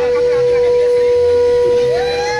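Conch shell (shankha) blown in one long, steady, loud note. A second conch comes in near the end at a higher pitch. This is the Bengali wedding conch call.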